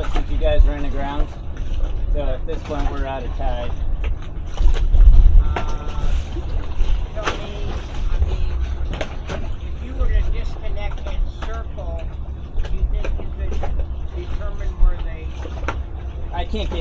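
Indistinct talk between the two boats' crews over a steady low rumble, with a few sharp knocks scattered through.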